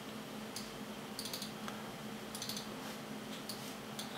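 Faint computer mouse clicks, scattered and sometimes in quick pairs, over a low steady hum.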